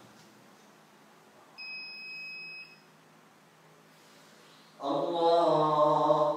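A single electronic beep, one steady high tone lasting about a second, a couple of seconds in. Near the end a man's voice starts chanting loudly: a prayer phrase sung out during congregational prayer as the worshippers rise from prostration.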